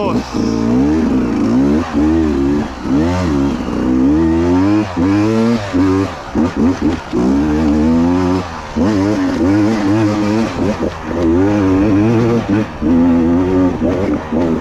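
Beta 200RR two-stroke enduro engine being ridden on and off the throttle, its pitch rising and falling continually, with several brief throttle cuts in the second half.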